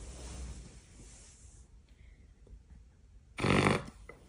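A short, loud fake fart noise near the end: one rapid rasping, flapping burst lasting under half a second.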